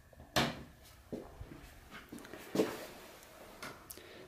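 A wall power switch clicking on about a third of a second in, followed by a few faint knocks.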